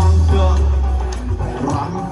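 A live band playing through a large concert PA system, with a heavy sustained bass note in the first second or so that then fades to a lighter mix.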